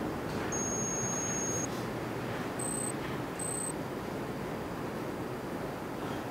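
High electronic phone-interface sounds: a fast, high ticking trill lasting about a second, then two short high beeps about a second apart, over a steady background hiss.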